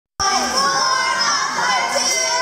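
A group of young girls shouting a cheer together, many high children's voices overlapping; it cuts in abruptly just after the start.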